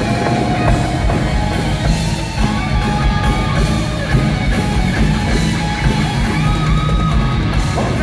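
Live rock band playing at full volume, with drums, bass and electric guitar in a dense, steady wall of sound, recorded from among the audience in a large hall.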